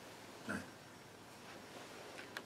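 A quiet pause in a man's speech, with one brief, faint breath-like vocal sound about half a second in.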